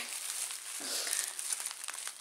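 Thin plastic bag crinkling and rustling as hands rummage inside it, with many small irregular crackles.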